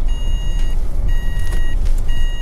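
A car's warning chime beeping in a steady pattern, about one beep a second, each lasting just over half a second. Under it is the low rumble of the engine and road inside the cabin.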